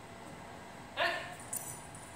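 A small dog gives one short whine about a second in, followed by a faint metallic jingle as it moves.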